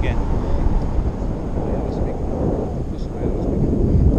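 Wind noise from the airflow of a paraglider in flight buffeting an action camera's microphone: a steady low rumble.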